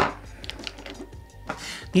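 Light clicks and taps of plastic lip gloss tubes being pushed together and shuffled on a wooden tabletop.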